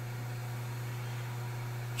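Steady low machine hum with a faint even hiss, unchanging throughout, with no clicks or knocks.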